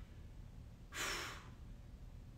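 One short, soft breath from a man, about a second in.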